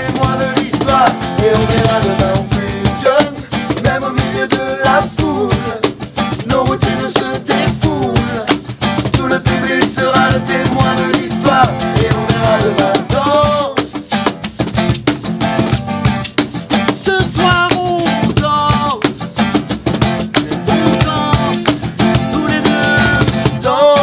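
Acoustic band performance: an acoustic guitar strumming and a cajón keeping the beat under voices singing a French chorus. The music is steady and continuous, with sung lines throughout.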